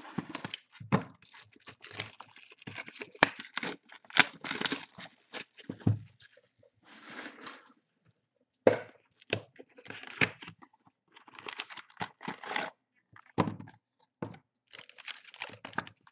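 Hands opening a box of trading cards and handling its sealed card packs: tearing and crinkling of wrapping, with sharp clicks and knocks, in bursts with short pauses.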